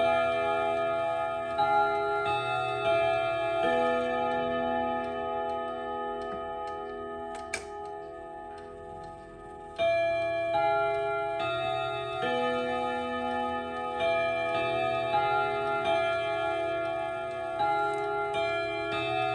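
The ten-hammer chime of an ODO 36/10 French clock strikes its gong rods, playing a melody of ringing notes with the clock's ticking underneath. Midway the notes ring down and a single sharp click is heard, then the tune strikes up again a little before ten seconds in.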